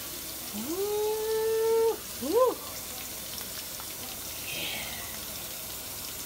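A person's wordless vocal sound: a high drawn-out tone that glides up and holds for about a second and a half, followed by a short rising-and-falling one.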